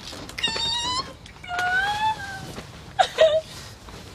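Three high-pitched, drawn-out wailing cries, the second rising and then falling in pitch.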